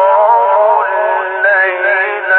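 Qur'an recitation in the melodic mujawwad style: a man's voice holding long, ornamented notes, the pitch stepping up about halfway through.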